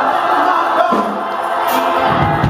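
Gospel choir singing, many voices together, with almost no bass or drums underneath.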